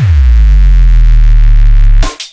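Drum and bass music from a DJ set: the drums drop out and one deep bass note holds, sliding down in pitch as it starts, then cuts off abruptly at the end.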